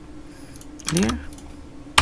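Computer keyboard keystrokes: faint scattered key clicks, then one sharp, loud keystroke near the end. A short rising vocal sound about a second in.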